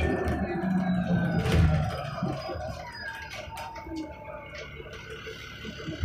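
Inside a 2008 Van Hool A300L transit bus, its Cummins ISL diesel and Voith transmission running, with a whine that falls in pitch over the first couple of seconds as the bus slows, then the sound gets quieter.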